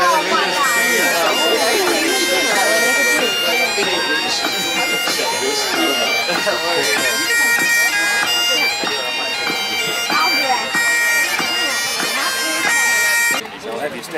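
Great Highland bagpipe played solo for Highland dancers: a tune over the steady drones, with people talking nearby. The piping cuts off abruptly near the end.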